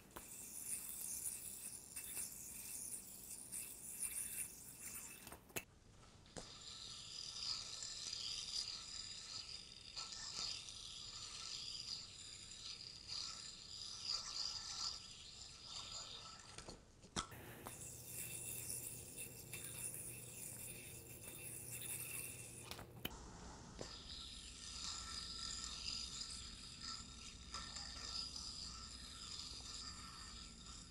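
A spinning yo-yo whirring faintly and steadily on its string, with a light hiss of the string rubbing over the fingers as it is mounted and popped out. The whir breaks off and resumes a few times.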